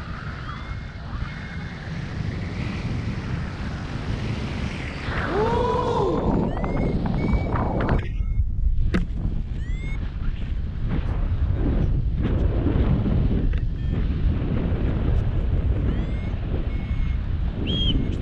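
Airflow buffeting the camera's microphone in paragliding flight, a steady rushing wind noise. A few short rising-and-falling whistle-like tones sound over it, about five to seven seconds in and again near the end.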